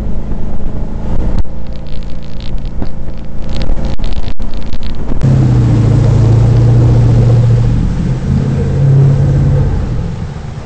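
Jet boat running at speed: a steady engine drone under the rush of the water jet and spray. About five seconds in the sound changes abruptly to a louder, steadier engine drone with more spray.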